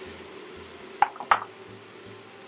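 Two light clinks of kitchenware against a stainless steel stockpot, about a third of a second apart, a little past the middle, over a steady low hum.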